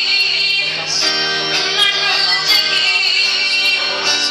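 A woman singing with strummed acoustic guitar accompaniment.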